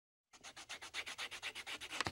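Rapid scratchy strokes of a marker on paper, about eight a second, starting a moment in after brief silence: a scribbling sound effect.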